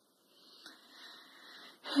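A person's faint breath, drawn in softly for about a second and a half, with a small click about half a second in.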